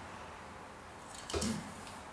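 Quiet handling of a transforming robot toy's plastic and chrome-plated parts, which are jamming against each other. One short sound comes about one and a half seconds in.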